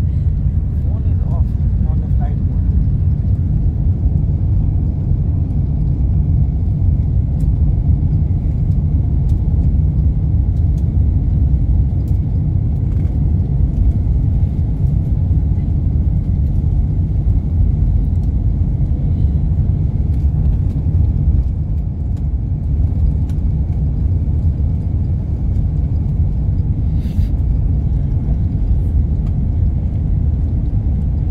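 Steady low rumble of an airliner's cabin noise from its engines and its wheels rolling on the ground, with a few faint ticks.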